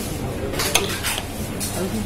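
Dishes and cutlery clinking and clattering, with one sharp clink a little under a second in.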